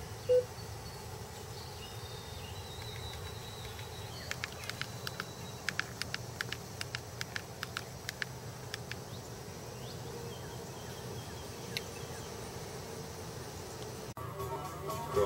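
Keys of a flip phone clicking in a quick, irregular run as a number is dialed, over a steady low hum inside a car. One short, loud beep sounds about half a second in.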